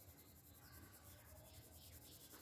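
Faint scratching of a colored pencil's tip on paper as it shades in small strokes, barely above near silence.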